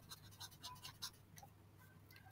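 Faint scratching and light ticks of a stylus writing on a tablet surface, over a faint steady low hum.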